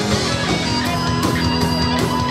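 Live metal band playing loud and steady: electric guitars and bass over a drum kit, with long held notes.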